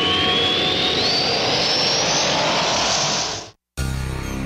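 Jet-like roaring sound effect with a whistle that rises steadily in pitch, used as a station-break transition. It cuts off suddenly near the end, leaving a brief silence.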